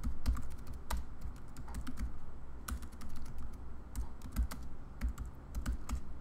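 Typing on a computer keyboard: runs of quick, irregular key clicks with short pauses between them.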